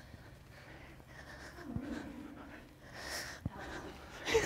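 A woman breathing hard and straining with forced exhales as she does strict pull-ups on a bar, a low grunt about a second in. Two faint knocks can be heard along with it.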